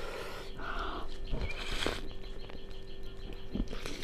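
A person chewing a mouthful of rice and dal with small mouth sounds, then scooping and lifting another handful by hand.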